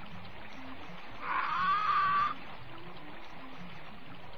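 Dark-ride ambience of water trickling and faint background music. About a second in, a drawn-out squawk-like call rises and then holds for about a second, typical of the ride's animatronic parrot that squawks 'Pieces of eight!'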